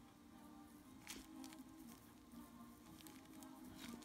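Near silence: room tone with a few faint soft taps.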